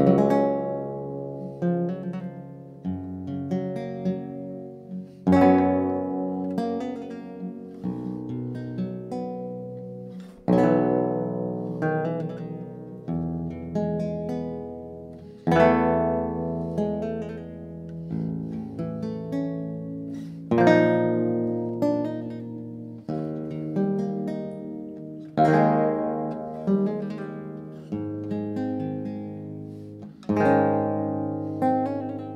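Theorbo playing a slow sequence of cadences: full plucked chords over deep bass notes, a new chord about every two and a half seconds, each ringing and fading before the next. The playing starts suddenly out of silence.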